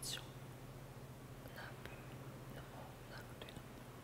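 Quiet room tone with a low hum, a short soft breathy hiss at the very start and a few faint small clicks and rustles.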